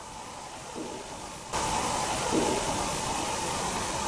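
Steady hiss of the recording's background noise, jumping suddenly louder about a second and a half in and then holding steady; no distinct knock stands out.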